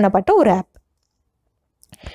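Speech only: a voice finishing a phrase in the first half-second, then a second of silence, with a faint click near the end.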